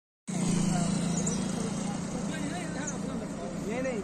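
Roadside traffic noise: a vehicle engine running with a steady low hum, a little louder in the first second, with people talking faintly in the background.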